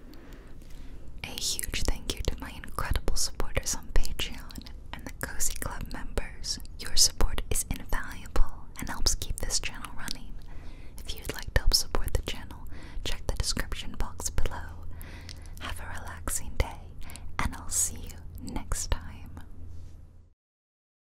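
A woman whispering close to the microphone, with many small mouth clicks, in a steady unbroken stream that stops abruptly at the end.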